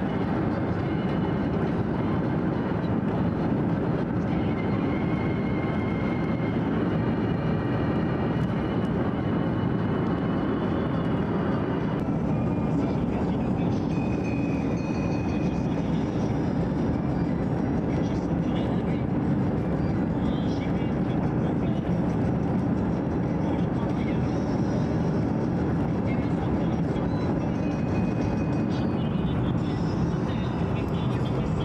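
Steady road and engine noise of a car driving along at speed, heard from inside the car, with a low, even rumble that does not change throughout.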